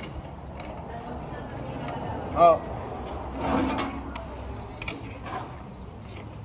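Metal clicks and clanks of a portable water pump's fittings being handled on the back of a fire tanker truck, the pump not running. A short, loud pitched sound stands out about two and a half seconds in.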